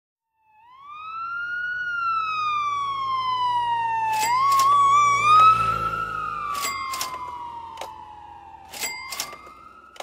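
A siren wailing: its pitch rises, then slides slowly down, warbles briefly about four seconds in, and rises and falls twice more. Several sharp clicks or knocks cut across it in the second half.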